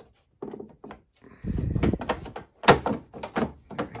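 Plastic front cover panel of a NIU N1S electric scooter being pressed and knocked into its clips: a run of plastic knocks and clunks, the loudest a sharp snap a little under three seconds in.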